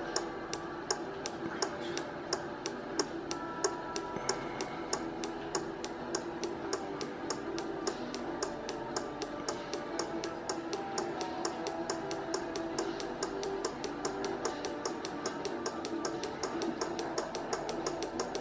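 A 12 V DC relay clicking as its contacts switch on and off, driven by a square-wave oscillator, in an even train of sharp clicks about three to four a second. The clicks come slightly faster over time as the oscillator's potentiometer is turned up to raise the frequency.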